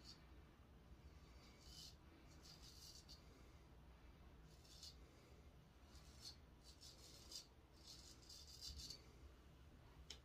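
Faint, short scraping rasps of a Henckels Friodur straight razor cutting through two days' stubble on the neck and jaw, one stroke after another at irregular intervals, bunched more closely in the second half.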